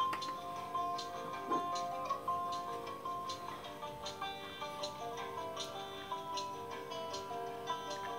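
Background music: held melodic notes over a light ticking percussion, about two ticks a second.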